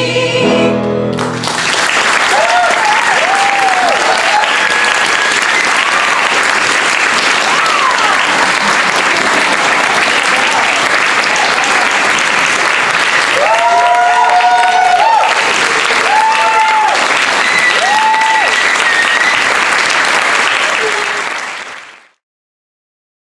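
The company's singing ends on a held chord about a second in, and the audience breaks into loud applause with whoops and cheers, which fades out near the end.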